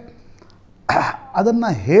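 A man clears his throat once, briefly, about a second in, then goes back to speaking.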